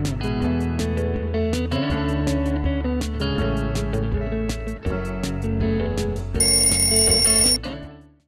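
Background music with guitar, then about six and a half seconds in an alarm-clock bell rings loudly for about a second and cuts off, a sound effect marking that the 10-minute bake is up.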